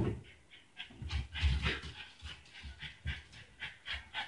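A flat-faced dog making a quick run of short vocal sounds, a few a second, as it is coaxed to ask to be let out. A sharp thump at the very start is the loudest sound.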